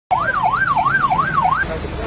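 An emergency vehicle siren in a fast yelp, its pitch sweeping up and down about three times a second, cutting off shortly before the end.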